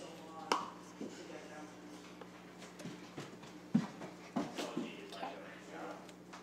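Scattered light knocks and scrapes of a wooden spoon against a measuring cup as peanut butter is scooped into it, about half a dozen separate clicks over several seconds.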